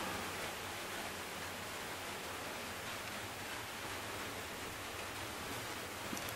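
Steady hiss from the recording's background noise, with a faint low hum and no distinct events.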